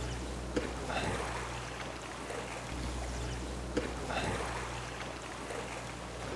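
River water rushing and lapping around a drift boat, with a steady low rumble beneath it.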